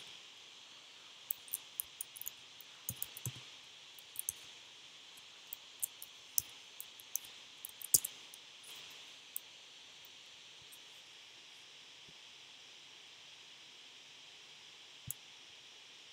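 Faint typing on a computer keyboard: irregular key clicks for the first nine seconds or so, over a steady low hiss, then one more click near the end.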